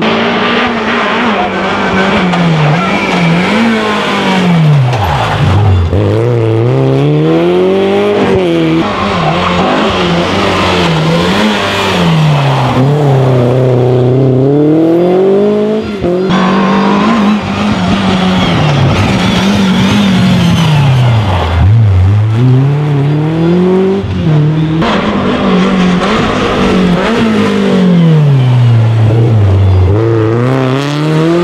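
Renault Clio rally cars taking a tight bend one after another at racing speed. Each engine revs hard, drops as the driver lifts and brakes into the corner, then climbs again through the gears on the way out, with tyre noise on the tarmac. The engine pitch falls and rises several times over the span.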